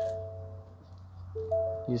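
Ford Super Duty dashboard warning chime: a lower note followed by a higher one, each ringing and fading, sounding at the start and again about a second and a half in. It is the alert for the driver's door standing open with the ignition on.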